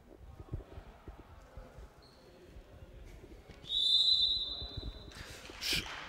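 Referee's whistle blown once, a steady high-pitched blast lasting about a second and a half a little past halfway through, signalling play to restart after the timeout. Before it come faint, scattered thumps on the hall floor.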